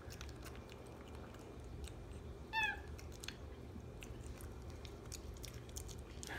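Capuchin monkey chewing cake, with faint scattered smacking clicks, and one short high squeak about two and a half seconds in.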